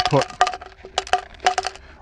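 Chunks of rock salt dropping one by one into a clear plastic brine bottle, making about eight sharp clicks, each with a brief ring from the bottle.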